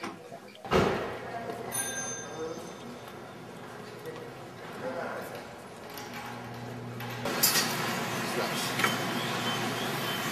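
A door thuds shut about a second in, then indistinct background noise with faint voices. The noise steps up louder about seven seconds in.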